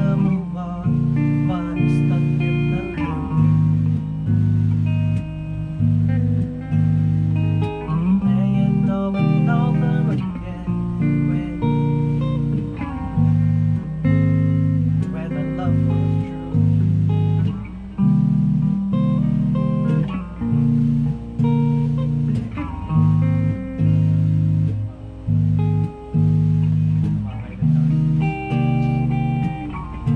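Electric guitar and electric bass playing a riff together, the bass holding low notes under plucked guitar notes, the phrase repeating about every two seconds.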